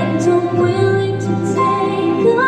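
Live concert music with a woman singing long held notes over the accompaniment.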